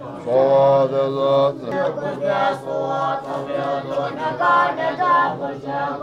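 Tibetan Buddhist monks chanting together, their voices held on sustained pitches in phrases with short breaks between them.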